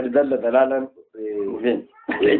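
A man's voice in two drawn-out phrases of speech or recitation, with a short break about a second in.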